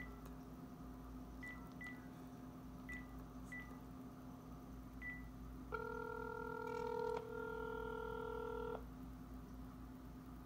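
Smartphone on speakerphone: a few short, high beeps as the call is placed, then a steady ringing tone of about three seconds with a brief break in the middle, the call ringing out before voicemail answers.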